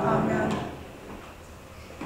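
Voices trailing off at the end of a spoken prayer, then a single sharp wooden knock about half a second in and faint rustling as a robed person rises from kneeling at a wooden prayer desk.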